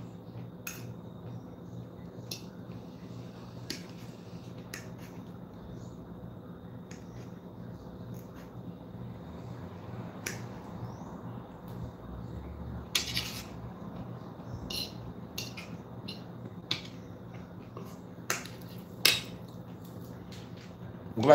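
A metal fork clinking and scraping on a plate as food is picked up and eaten: sharp, scattered clicks every second or so, a few louder ones near the end, over a steady low hum.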